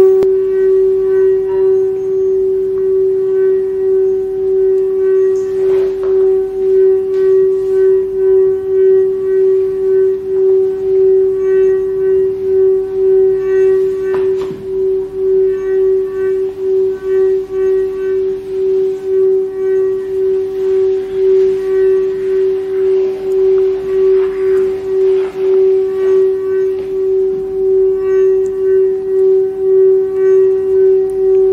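A sustained musical drone held on one pitch with several overtones, pulsing in level about one and a half times a second without a break. Two faint brief noises sit under it, about six and fourteen seconds in.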